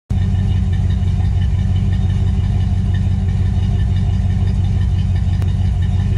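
Car engine idling, steady and deep.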